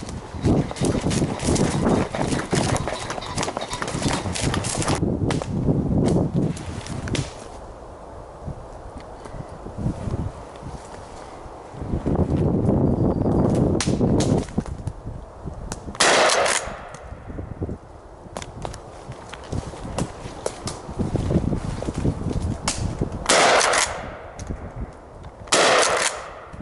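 Winchester SXP 12-gauge pump-action shotgun fired three times up into the treetops: one shot about sixteen seconds in, then two more about two and a half seconds apart near the end. Before the shots there is rustling and crunching from movement through dry woodland leaf litter.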